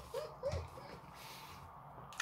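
A soft chuckle: a quick run of short pitched notes, about five a second, fading out within the first second.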